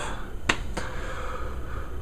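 A sharp single click about half a second in, then a fainter tap, over a faint steady background hiss.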